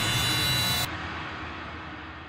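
Steady outdoor rushing noise with faint high steady tones. Its upper range cuts off abruptly a little under a second in, and the rest fades away.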